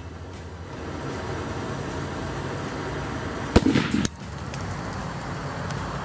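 Gas torch flame hissing steadily against a sealed glass test tube of water. About three and a half seconds in, the tube bursts from steam pressure, about 93 psi at 333 °F, with one sharp bang and a half-second rush of escaping steam, after which the torch carries on.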